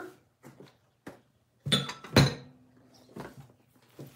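Hard objects being set down and moved on a table: a few light clicks, then two sharp knocks about half a second apart, the second with a brief ringing after it.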